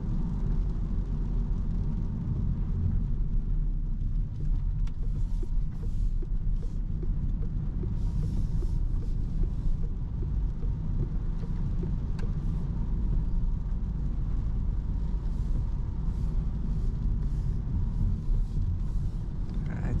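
Cabin noise of a 2024 Opel Corsa cruising on a wet road: a steady low rumble of tyres and road with the engine running quietly underneath, and a few faint brief hisses of water from the tyres.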